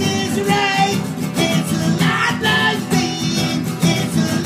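Acoustic guitars strummed and picked together in a steady rhythm, with a voice singing along.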